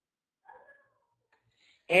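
Near silence with one faint, brief sound about half a second in, then a man's voice starts speaking just before the end.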